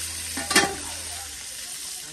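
Brown stew chicken sizzling in hot oil in a pot over a wood fire: a steady frying hiss, with one brief sharp sound about half a second in as pieces are forked out.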